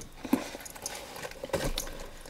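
Light taps, clicks and rustles of craft supplies and a fabric zip pouch being handled on a desk as items are taken out.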